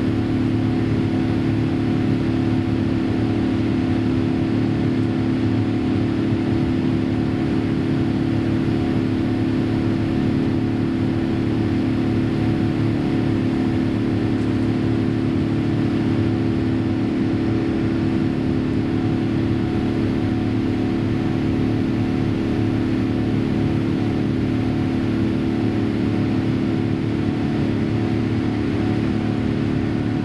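Steady cabin noise of a Boeing 787-8 airliner in its climb after takeoff: an even engine and airflow drone with a low, steady hum.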